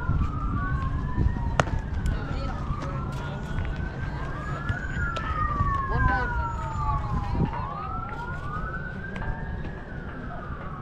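Emergency-vehicle siren wailing, its pitch rising and falling slowly over a few seconds at a time, with two siren tones crossing each other. One sharp knock sounds about one and a half seconds in.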